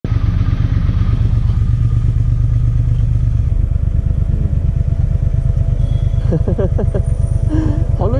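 Triumph Speed Twin 1200's parallel-twin engine running as the bike rides, loud and steady, its low note changing to a rapid even exhaust beat about three and a half seconds in. A voice speaks briefly near the end.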